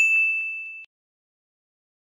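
A single high, bell-like ding sound effect of the kind played with a subscribe-button animation. It rings for just under a second and cuts off suddenly.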